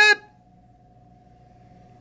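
Quiet room tone with a faint steady hum, after the clipped end of a man's spoken word.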